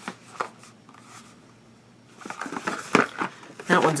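Cardboard product boxes handled and set down: a couple of light taps and knocks, then rustling and shuffling, with a voice starting near the end.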